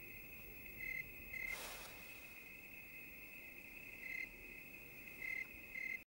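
Crickets chirping at night: a faint, steady high trill with a few louder chirps standing out, and a brief rustle about one and a half seconds in.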